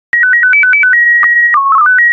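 Slow-scan TV (SSTV) signal starting a PD120 transmission: a quick run of alternating beeping tones, then a held high leader tone with one brief dip, a short lower warble of the mode code, and then the fast, regular warbling tones of the picture lines being sent.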